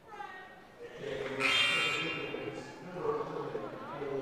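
Arena horn sounding once for under a second, about a second and a half in, over the hum of crowd voices in the gym; the kind of horn blown from the scorer's table to call in a substitution.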